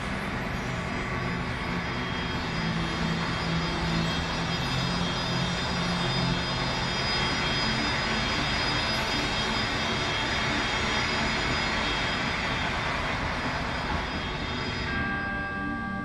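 A marching band show's loud, sustained wash of sound in a large indoor stadium, with a steady low drone near the start. It thins near the end, leaving ringing bell-like tones.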